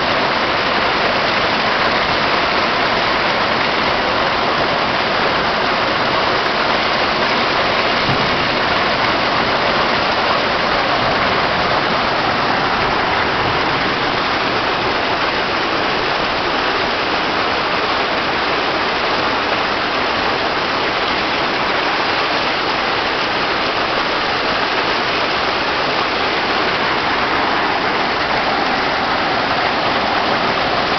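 Steady, loud rush and splash of hot spring water pouring into a rock-rimmed soaking pool and churning its surface.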